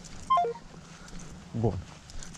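Smartphone's short electronic tone, a quick run of notes stepping down in pitch, the sound of a phone call ending.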